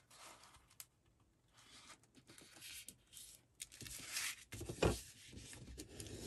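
Paper being folded and smoothed by hand: faint rustling and rubbing of card stock, with a few light clicks and a soft knock about five seconds in.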